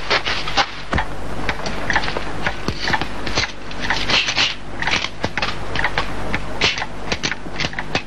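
Irregular knocks and clicks, several each second, over the steady hiss and low hum of an old film soundtrack.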